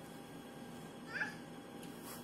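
A toddler's single short, high-pitched squeal about a second in, over faint room tone.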